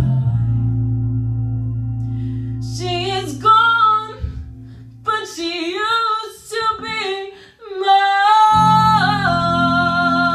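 A woman singing into a microphone over a sustained instrumental accompaniment. A held low chord sounds first, her voice comes in about three seconds in with a few phrases, and she ends on a long held note over the chord.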